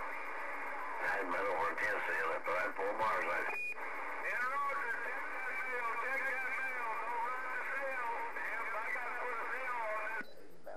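Distant voice received on a Galaxy CB radio, coming through steady static with a thin, narrow telephone-like sound and too garbled to follow; the voice starts about a second in. A short high beep sounds about three and a half seconds in.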